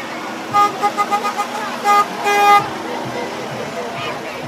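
A vehicle horn honking in a pattern: a quick run of short toots, then two more, the last one held longer. Crowd chatter continues underneath.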